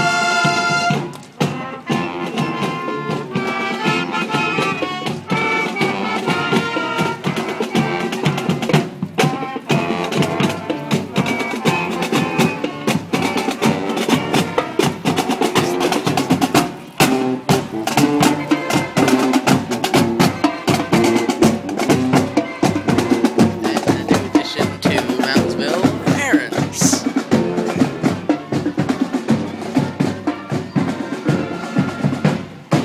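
Marching band playing a tune as it marches past: brass, sousaphones among them, over drums.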